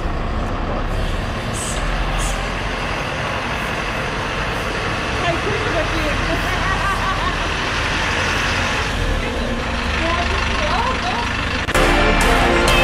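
A tour coach's diesel engine running with a steady low rumble as the coach drives slowly up and pulls in, with people talking faintly in the background.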